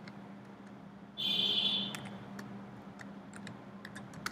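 Faint scattered clicks of a computer keyboard and mouse over a steady low hum, with a brief high-pitched sound about a second in, the loudest thing, lasting under a second.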